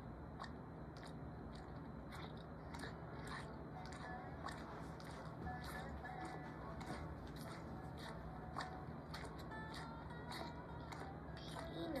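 An animated film's soundtrack played through computer speakers: quiet background music with a run of small, irregular clicks and smacks.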